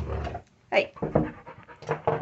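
Dog panting in a few short breaths, after a low muffled rumble at the start.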